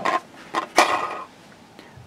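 Plastic Candy Land spinner being handled and spun: two short bursts of plastic clatter about half a second apart.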